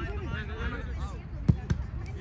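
Two sharp thuds of a soccer ball being kicked about a second and a half in, a fifth of a second apart. Players' voices call out during the first second.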